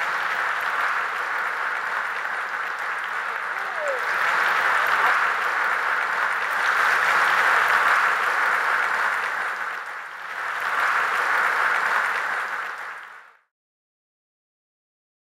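Audience applauding: a dense, steady clapping that swells around four to eight seconds in, dips briefly near ten seconds, picks up again and fades out shortly before the end.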